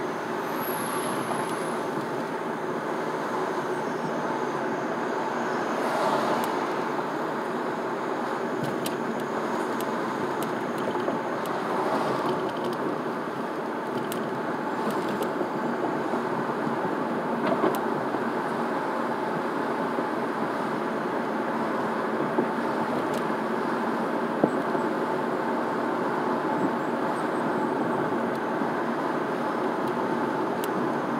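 Steady road and engine noise of a car driving at city speed, heard from inside the cabin, with a few faint clicks now and then.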